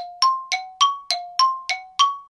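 Outro sting of bright bell-like chimes: eight notes struck evenly, about three a second, alternating between a lower and a higher pitch, each ringing briefly.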